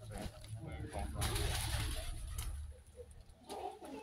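Pigeons cooing in a few short, low calls over a steady low rumble.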